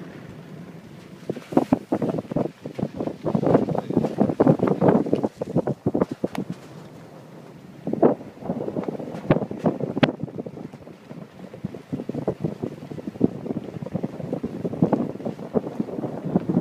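Wind buffeting the microphone in irregular gusts, with calmer lulls near the start and about six seconds in, and a few sharp clicks.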